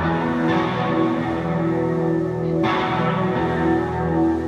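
Electric guitars playing slow, sustained chords live through amplifiers, the notes ringing and chiming with no clear drum beat.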